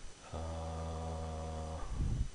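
A man's closed-mouth hum, one low steady 'mmm' lasting about a second and a half.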